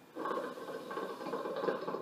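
Water bubbling in the base of a KM Single Heart hookah as one continuous draw is taken through the hose, lasting nearly two seconds and stopping suddenly.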